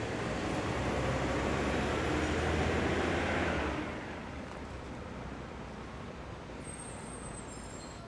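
Recycling truck's engine running nearby, a deep rumble that swells to a peak and then drops away about four seconds in, leaving a quieter steady background noise.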